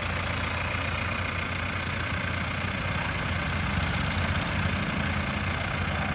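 Tata 207 pickup's diesel engine idling steadily.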